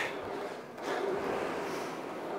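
Aviron rowing machine in use at a high stroke rate: a faint, soft rushing sound that swells about a second in.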